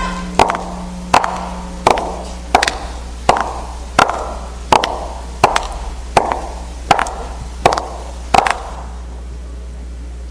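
High-heeled shoes striking a stage floor in slow, even steps, about thirteen, each followed by a hall echo. The steps stop about eight and a half seconds in.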